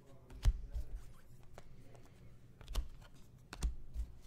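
Scattered light clicks and taps, the sharpest about half a second in, as glossy trading cards are thumbed and slid off a stack by hand.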